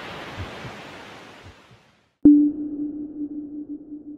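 Film soundtrack effect: a soft hiss fades away, and after a brief silence a sudden sharp strike gives way to a single steady low tone that holds.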